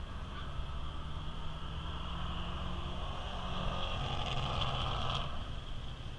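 Distant drag-racing car engine at the far end of the strip, growing louder and then cutting off sharply about five seconds in. A steady high-pitched drone runs underneath.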